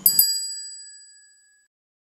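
A bright bell-like ding: two quick strikes close together, then a high ringing tone that fades away over about a second and a half.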